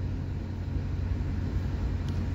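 Steady low rumble of street traffic, even in level with no distinct events.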